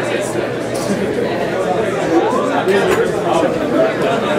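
Overlapping voices of a crowd of spectators talking and calling out without a break, with a few short sharp sounds among them.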